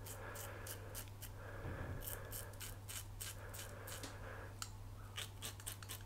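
Muhle R108 double-edge safety razor with a new blade cutting through lathered stubble: a faint, rapid, irregular crackle of short scraping clicks as the razor is drawn over the face.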